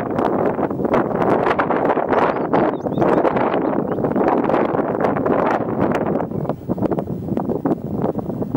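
Wind buffeting the microphone: a loud, steady rushing that swells and dips, with scattered faint clicks through it.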